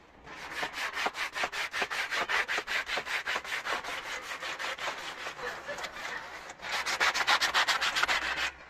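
Polishing cloth rubbing wax polish into a leather boot in quick, light back-and-forth strokes, about four or five a second, with a brief pause about six and a half seconds in. This is the cloth stage of a mirror shine, done with light pressure so the wax is not stripped off.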